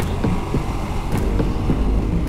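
Wind buffeting on a helmet microphone over the running engine and tyre noise of a Ducati Multistrada V4S being ridden at road speed, with a few sharp ticks.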